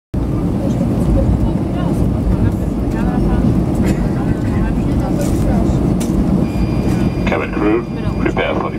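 Airbus A320 cabin noise while taxiing: a steady low rumble from the engines and the rolling airframe, heard from inside the cabin, with faint voices underneath.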